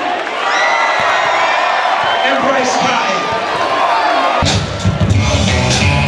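Large crowd in a gymnasium cheering and shouting. About four seconds in, loud music with a heavy bass beat starts abruptly over the crowd.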